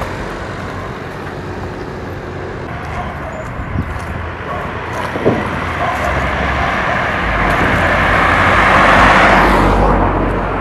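A car driving past on a paved road: its tyre and engine noise builds over several seconds, peaks about nine seconds in with a low rumble, then falls away quickly as it goes by.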